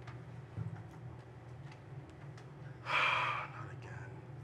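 A person's loud, short breathy rush of air, about half a second long and about three seconds in, over a steady low room hum with a few faint light ticks.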